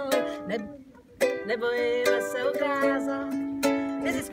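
A ukulele strummed in rhythm behind a woman's singing voice. The music drops away briefly about a second in, then the strumming picks up again.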